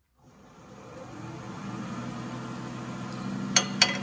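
Wood lathe switched on and spinning up with an out-of-round square spindle blank, its motor hum rising over about the first two seconds and then running steadily. Two short sharp knocks come near the end.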